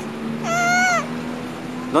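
A little girl's single high-pitched drawn-out vocal sound, about half a second long, a moment after the start.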